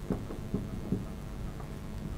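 Marker pen writing on a whiteboard: a few faint strokes over a low, steady room rumble.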